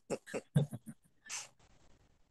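Soft laughter from one person: a quick run of short chuckles, then a breathy exhale about a second and a half in.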